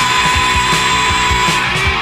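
Instrumental stretch of a punk rock song: electric guitars and drums playing loud, with a held guitar note through most of it.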